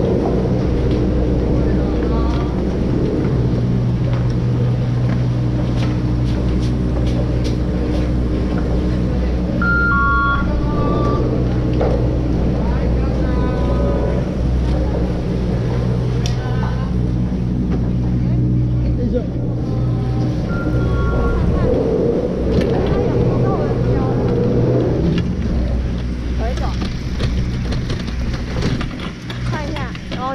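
Chairlift terminal machinery running with a steady low mechanical hum under the bullwheel as the chair is loaded. Near the end the hum drops away as the chair leaves the station.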